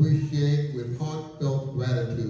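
A man speaking into a handheld microphone in a measured, phrase-by-phrase delivery, with short pauses between phrases.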